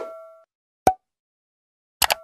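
End-screen animation sound effects. A bell-like chime rings out and fades in the first half second, a single short pop comes a little under a second in, and a click with a brief chime sounds at the very end.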